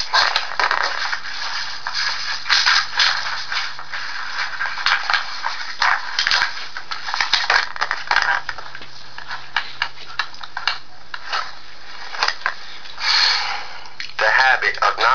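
Paper rustling and scraping close to the microphone, with irregular clicks and a louder rustle near the end: pages of the manual being handled and turned. A faint steady low hum lies under it.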